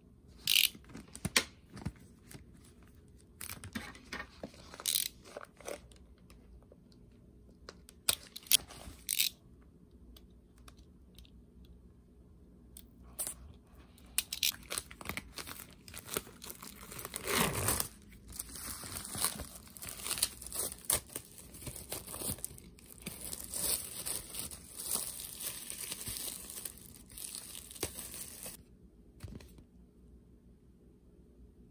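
Clear plastic shrink wrap being torn and peeled by hand off a vinyl record sleeve. It starts with scattered sharp crackles, then turns into a long stretch of continuous crinkling and rustling from about halfway until just before the end. The loudest tear comes a little past halfway.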